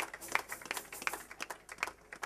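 Scattered hand clapping, a handful of irregular claps a second, thinning out toward the end.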